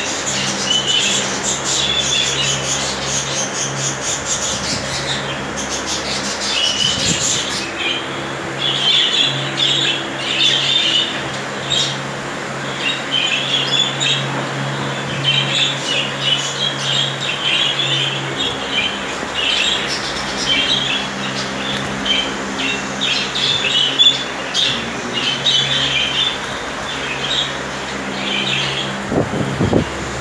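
Budgerigars chattering and chirping without a break, a dense mix of high warbling calls, over a steady low hum. There is a brief bump just before the end.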